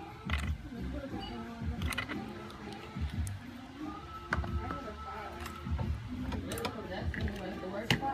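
Background voices and music, with a few soft low thumps and clicks scattered through.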